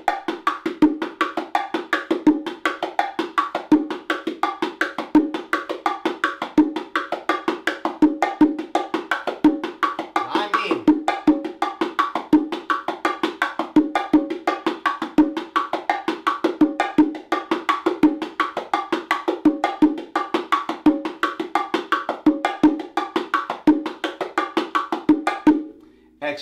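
Bongo drums played by hand in the martillo ("hammer") groove: a quick, even stream of strokes with regularly recurring louder open tones. The basic pattern runs with a variation lick worked in and out of it while the time is kept.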